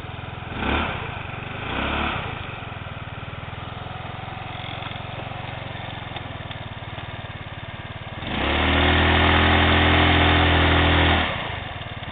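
Baotian Tanco scooter engine idling, blipped briefly twice, then held at high revs for about three seconds and let fall back to idle: revved hard for a burnout with the rear wheel on grass.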